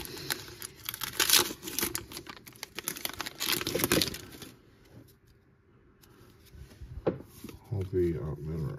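Plastic wrapper of a 2023 Bowman baseball card pack being torn open and crinkled as the cards are pulled out, for about four and a half seconds. Then it goes quiet, with a single brief tap near the end.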